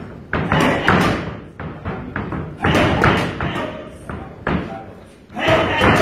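Boxing gloves landing on focus mitts in quick combinations: several bursts of sharp thuds, with short gaps between them.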